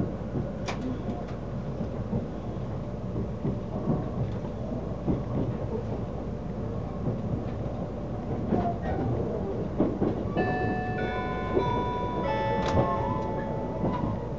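Odoriko limited express train running, heard from inside the car: a steady low rumble with scattered clicks and rattles from the wheels and car body. From about ten seconds in, a set of steady tones joins it, changing pitch in steps.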